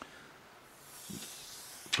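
Faint handling of a smartphone held in the hand: a light click, then a soft hiss that grows toward the end.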